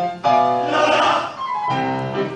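A large mixed choir singing sustained chords, the sound swelling to its loudest about a second in before a new chord begins near the end.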